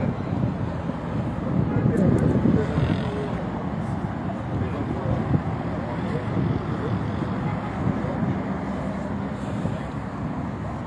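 Steady street traffic noise from cars, with indistinct voices in the background.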